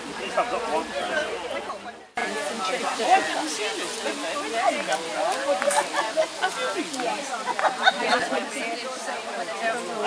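Overlapping chatter of a group of people talking at once. The sound breaks off abruptly about two seconds in, and the babble of voices carries on after it.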